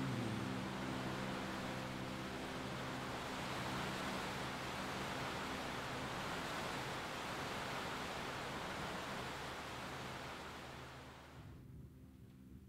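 Heavy rain beating on a roof, a steady hiss, with the last chord of an upright piano ringing on quietly underneath. The rain sound drops away about a second before the end while the piano tones remain.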